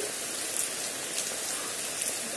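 Steady rainfall, an even hiss with a couple of sharper drop ticks.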